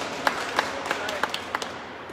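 Small audience applauding, with single hand claps standing out sharply, dying away near the end.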